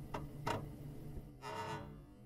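Clock-like ticking, about two or three ticks a second over a low steady hum, then a short buzzing tone about one and a half seconds in.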